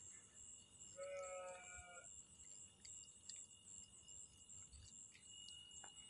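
Near silence: faint background with a thin steady high tone, and one faint tonal sound lasting about a second, about a second in.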